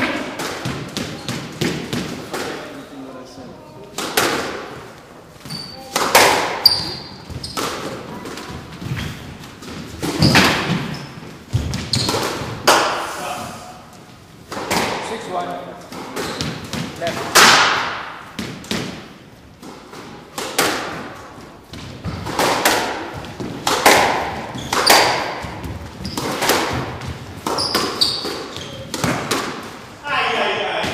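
Squash rally: the ball is struck by rackets and smacks off the court walls, giving a steady run of sharp hits with echoing tails, loud ones every second or two, and a few short sneaker squeaks on the wooden floor.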